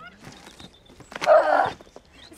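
A woman's voice straining with effort: a short rising squeal, then one loud, rough yell lasting about half a second a little past the middle.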